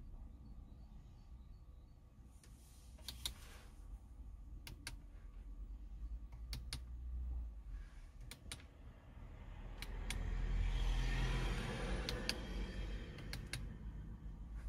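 Clicks of the Audi MMI infotainment control buttons being pressed, about a dozen in all, mostly in quick pairs. A low rustling rumble swells about two-thirds of the way through and is the loudest sound.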